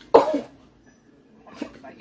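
A woman's short, sharp vocal exclamation just after the start, like a startled gasped "oh", then only faint sounds.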